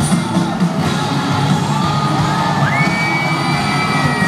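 Loud rock music with a crowd whooping and yelling over it; a high held note slides up and holds from about two and a half seconds in.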